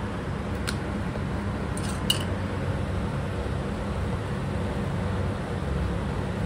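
Steady low hum of kitchen room noise, with two light clicks about one and two seconds in as spice containers are handled on the counter.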